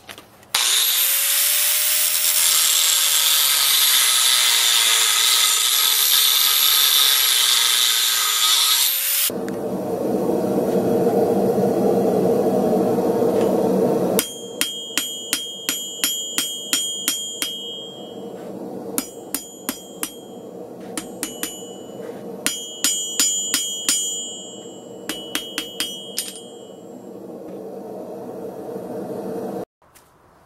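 An angle grinder runs for about nine seconds, its whine dipping and recovering as it is loaded against a steel rod. After a steady hum, runs of quick hammer blows on hot steel on an anvil follow, each one ringing, in bursts of several strikes with short pauses between.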